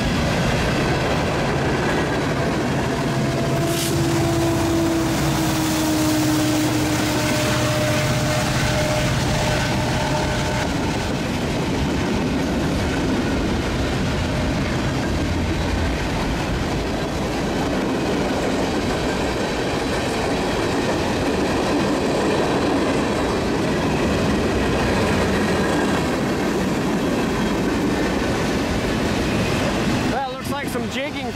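Freight cars of a long mixed freight train rolling past close by: a steady rumble and clatter of steel wheels on the rails. A sharp click comes about four seconds in, and a thin wheel squeal sounds from about four to ten seconds in.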